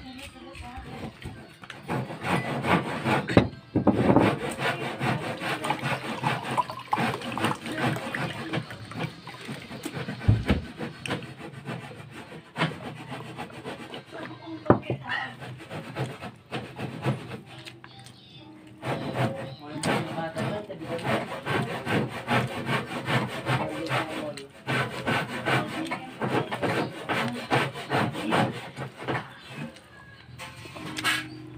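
Close-up eating noises: a man chewing rice and octopus with the mouth near the microphone, with the scrape of fingers gathering food on a ceramic plate. The sound is busy and uneven, easing off briefly past the middle.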